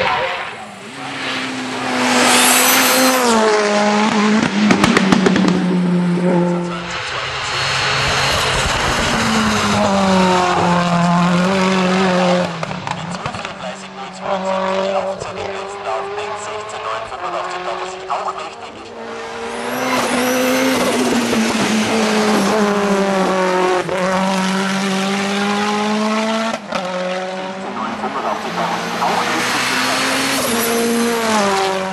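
Ford Escort WRC rally car's turbocharged four-cylinder engine revving hard through the gears as it drives past, the pitch climbing and dropping again and again at each gear change. A burst of sharp crackles comes about four to six seconds in.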